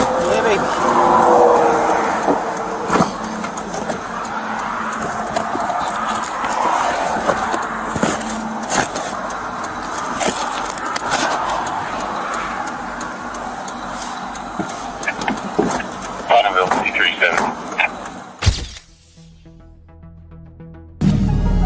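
Roadside noise picked up by a body-worn camera: a steady rush of passing traffic, with knocks and rustling as cardboard boxes are handled in a car's trunk, and muffled voices. Near the end the sound cuts abruptly to a quiet passage of faint music.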